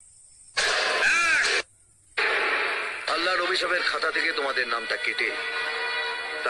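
Speech with background music. It opens with half a second of near silence, then a short loud burst of voice about a second in, then another brief pause before the talking runs on.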